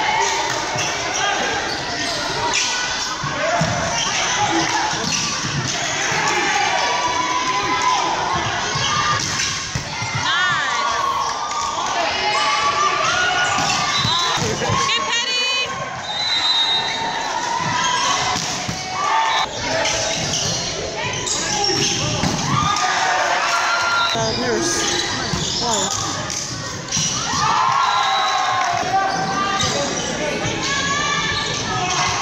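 Live volleyball play in a reverberant sports hall: players shouting and calling through the rallies, the ball struck with sharp knocks, and a few short shoe squeaks on the court floor.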